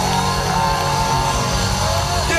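Live R&B band music heard from within the concert crowd, with a steady bass underneath and a held melodic line above.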